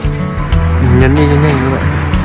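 Background music, with a long, low, wavering call over it that swells about a second in and fades just before the end.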